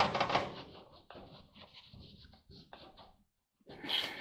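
Faint rubbing and a few light taps of a rag wet with denatured alcohol being wiped over a grimy surface, with the alcohol not cutting the grime well.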